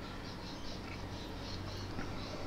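Steady engine and road noise of a car driving along a suburban street, heard from inside the cabin as a low, even hum. Faint high chirps recur through it.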